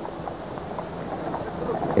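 Outdoor ambience of racehorses being led at a walk, their hooves clip-clopping on a hard path over a steady background hiss.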